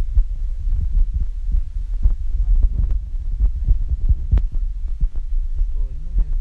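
Wind buffeting the phone's microphone: a loud, uneven low rumble that never lets up.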